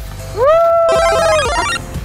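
Short electronic jingle: a note glides up and holds for about a second, then falls, while a quick run of high chiming notes plays over it, above background music.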